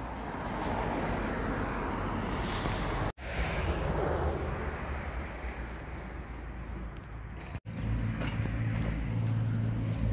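Outdoor noise with a running engine rumbling underneath, broken twice by sudden cuts. After the second cut a steady low engine hum is more prominent.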